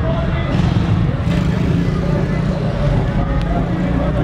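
A vehicle running nearby, a steady low rumble, with people talking over it.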